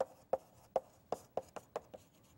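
Chalk writing on a blackboard: the chalk knocks sharply against the slate with each stroke, a quick irregular run of about eight taps in two seconds.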